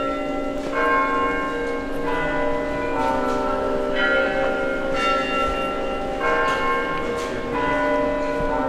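Monastery church bells ringing, several bells of different pitches struck in turn about once a second, each ring carrying on under the next.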